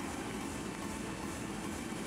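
Ice hockey arena ambience: a steady, even murmur of crowd noise with no distinct calls or impacts.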